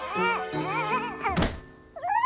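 A cartoon character's high-pitched babbling over light background music, then a single dull cartoon thunk about one and a half seconds in.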